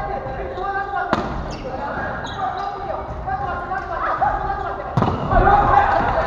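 A volleyball struck twice during a rally in a gymnasium: two sharp smacks about four seconds apart, the second louder, ringing in the hall. Players call out between the hits.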